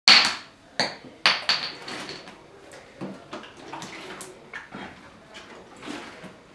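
Thin plastic water bottle squeezed and twisted by hand, crackling: three loud sharp crackles in the first second and a half, then softer irregular crinkling.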